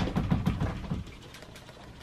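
Framed glass shower door being opened, a quick run of small rattling clicks over about the first second.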